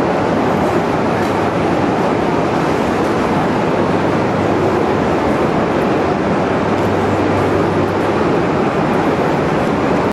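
Loud, steady running noise of a train going by, with no distinct exhaust beat.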